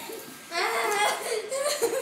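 Girls laughing, breaking out about half a second in.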